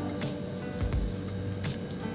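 Quiet background music with steady held notes.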